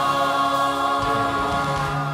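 Church choir singing, holding a long sustained chord.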